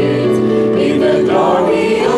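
A congregation of men and women singing a hymn together in chorus, with long held notes.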